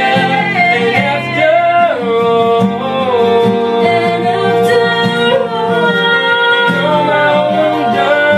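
A woman singing long held notes over acoustic guitars strumming.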